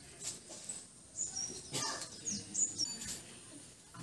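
Small birds chirping, a handful of short, high, falling notes in the middle seconds, with a few sharp clicks or knocks among them.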